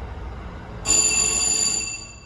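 A bright, bell-like elevator chime rings once, starting about a second in and lasting about a second before fading. Under it runs the steady low rumble of the hydraulic freight elevator car travelling.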